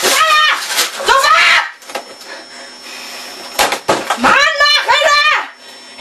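A boy shouting shrilly and unintelligibly in German at his computer, in two bursts: one at the start and one more a couple of seconds later, with a quieter stretch between that holds only a faint steady hum.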